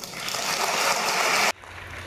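Audience applauding, swelling in loudness and then cut off suddenly about one and a half seconds in.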